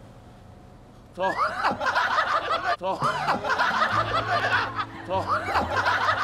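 A group of people laughing hard together, breaking out suddenly about a second in after a brief hush and carrying on in overlapping peals.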